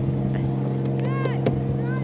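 Boat motor idling with a low, even hum. Three short, high cries that rise and fall in pitch sound over it: one near the start, one about a second in, and one near the end.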